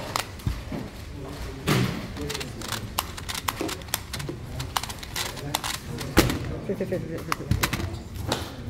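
Rubik's Clock being speedsolved: a quick, irregular run of sharp plastic clicks as its pins are pushed and its dials turned, with a louder knock about six seconds in.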